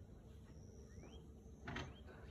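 Quiet low background hum, with a faint short rising chirp about halfway through and a brief rustle near the end.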